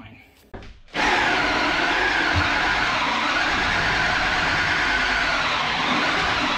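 Power drill turning a two-and-a-half-inch hole saw, cutting the flush-button hole through the toilet boxing's front panel. It starts suddenly about a second in and runs steadily under load.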